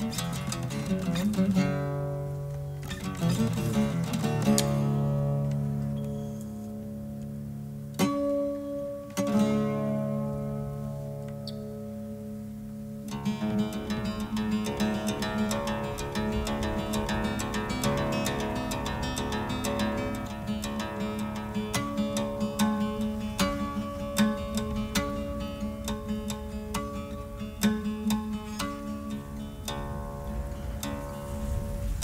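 Solo Cretan laouto played with a plectrum: slow, ringing phrases with long-held notes and short pauses, then from about halfway a much faster stream of closely picked notes over a steady low held note.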